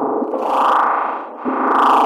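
Experimental electronic music: a distorted, effects-laden synthesizer texture that swells and fades in a repeating cycle about every two seconds, dipping briefly just after the middle.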